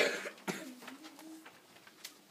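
A loud cough close to the microphone, then a second, weaker cough-like burst about half a second later, followed by a brief low voice.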